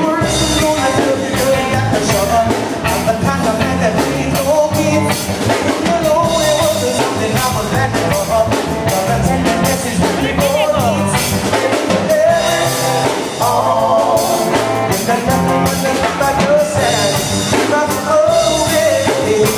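A live rock band playing: electric bass, electric guitar and a drum kit keeping a steady beat, with singing over it.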